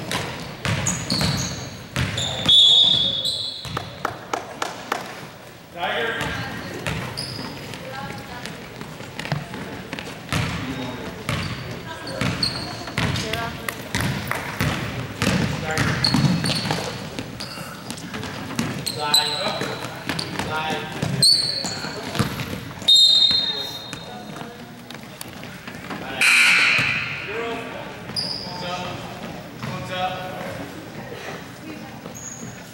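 Indoor basketball game: a basketball bouncing on the hardwood court, short high sneaker squeaks, and players and spectators calling out.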